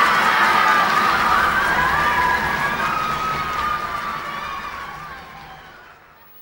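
Concert hall crowd cheering and shouting in welcome, many voices at once. The cheering fades away over the last two seconds.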